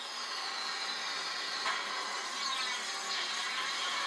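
Sci-fi transformation sound effect from a TV programme, played through the television's speaker: a steady hissing shimmer with faint sweeping tones, growing a little louder about a second and a half in.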